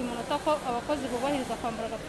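A woman speaking, her voice over a steady hiss.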